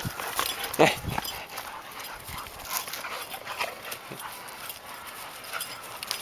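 Dogs playing rough on a dirt slope: paws scuffling and footfalls on the ground, with a brief louder sound about a second in.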